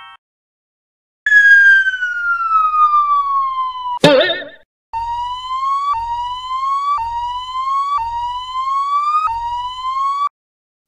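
Cartoon sound effects: a whistle falling in pitch for about three seconds ends in a sharp crash. Then a siren-like rising whoop repeats about once a second.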